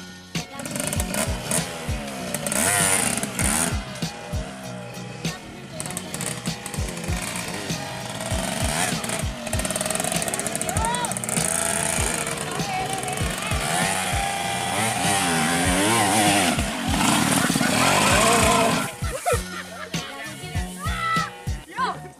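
Dirt trail motorcycle engine revving up and down again and again as the bike is worked up a grassy slope, over background music with a steady beat.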